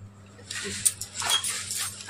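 Cloth rustling close to the microphone as a sari is handled and brushes against the phone, with a sharp click about a second in.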